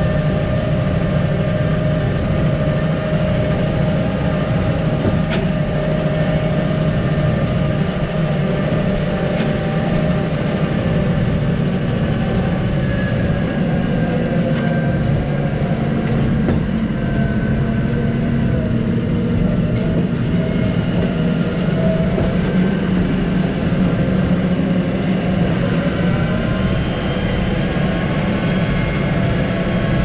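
Claas Arion tractor's diesel engine running steadily as it tows a muck spreader, heard from right behind the tractor's hitch.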